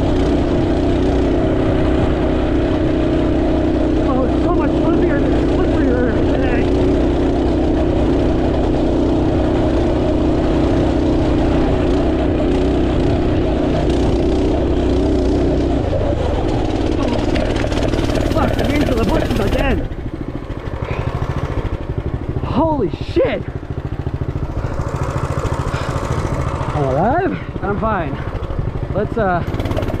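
Off-road motorcycle engine running steadily under part throttle while riding. After about sixteen seconds it eases off, and through the last ten seconds the revs rise and fall in several quick sweeps.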